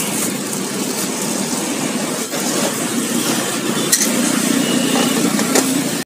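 Steady street traffic noise with engines running, broken by two short sharp clicks about four seconds in and near the end.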